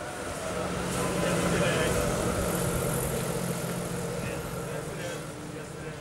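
City street traffic ambience: a steady hum of vehicles with an engine idling, and faint, indistinct voices of passersby. It swells over the first second or two, then eases slightly.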